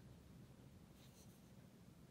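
Faint, soft swish of an ink-loaded sumi-e brush stroking across paper, painting a cherry branch, against near silence.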